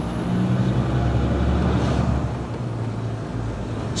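Iveco HGV's engine and road noise heard inside the cab while driving, a steady low drone that swells slightly in the middle.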